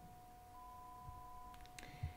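Faint computer bleep: a single steady tone lasting about a second, played by the notebook to signal that the GAN training run has finished, over a faint steady background tone, with a couple of small clicks near the end.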